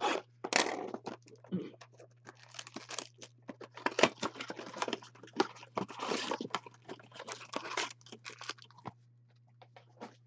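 Clear plastic shrink-wrap crinkling and tearing as it is stripped off a Panini Prizm basketball blaster box, then the thin cardboard box being torn open, in irregular rustling bursts with one sharp crack about four seconds in.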